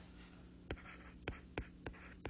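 Faint taps of a pen tip on a tablet touchscreen while handwriting, a quick irregular series of small clicks, about three or four a second, starting under a second in, over a faint steady hum.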